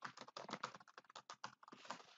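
Computer keyboard typing: a quick, faint run of key clicks that stops near the end.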